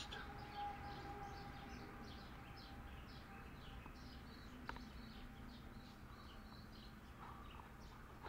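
Faint birds chirping in a steady run of short, high calls over a low background hum, with a single click a little past halfway.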